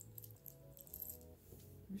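Faint background music with a few soft held tones, under light clicking of small plastic pearl beads as fingers sort through them in a palm.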